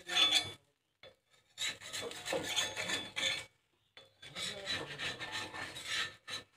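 Spatula scraping and rubbing against a flat griddle (tawa) under a large flatbread, in three stretches of rasping strokes with short silent gaps between them.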